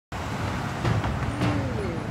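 Street traffic: cars driving along a city street, a steady low rumble of engines and tyres.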